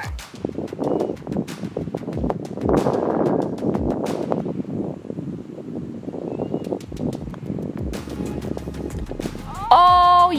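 Indistinct people's voices, with scattered short clicks. Near the end comes a loud held pitched sound whose pitch steps downward.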